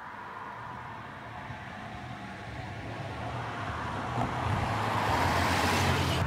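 A car approaching and passing close by: a rush of engine and tyre noise that grows steadily louder, loudest near the end.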